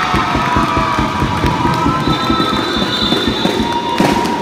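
Basketball spectators cheering with long sustained yells, over a fast, irregular run of knocks like clapping or banging from the crowd.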